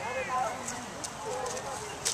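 Indistinct talk from several people in the background, with light, irregular footsteps and crunches as a handler and an Akita walk over dry leaves and dirt.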